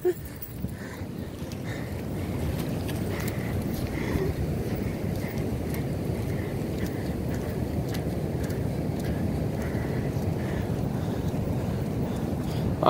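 Ocean surf breaking and washing up a sandy beach, a steady rush of water that builds over the first couple of seconds, with wind on the microphone.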